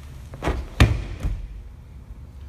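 A grappler's body hitting the gym mat as he is tipped over onto his back: a few dull thuds, the loudest a little under a second in.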